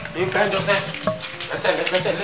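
Raised voices of a woman and a man in an agitated exchange, the words not made out, over a steady crackly hiss.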